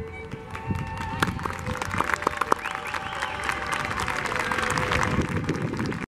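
Violin background music dies away in the first second, followed by scattered clapping and applause that carries on to the end.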